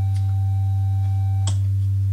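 Modular synthesizer playing a steady low sine tone mixed with a second oscillator an octave up, the two slightly out of tune. A brief click comes about three quarters of the way through, where a fainter higher tone drops out.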